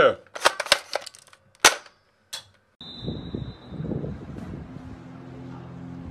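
A handheld gun firing: a quick burst of several sharp shots within the first second, then two more single shots about two-thirds of a second apart. It breaks off into a short silence, followed by steady low background noise.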